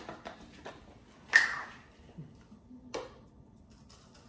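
Small spice jar being handled and opened: a few light clicks, then one louder, sharper sound about a second and a half in, and another click near three seconds.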